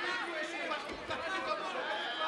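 Several people's voices talking and calling out over one another, no single clear speaker.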